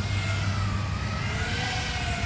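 FPV quadcopter's motors and propellers whining in flight, the pitch sagging in the middle and climbing again as the throttle changes, over a steady low hum.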